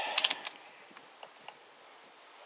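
Quick run of about four clicks from a multimeter's rotary selector switch being turned to the ohms range, followed by two faint ticks about a second later.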